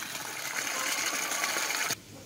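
Small pump circulating water in a fish tank: a steady rushing noise with a faint high whine, cutting off abruptly near the end.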